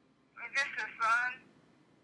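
A woman's voice over a phone call, briefly asking a short question ('Is this his son?').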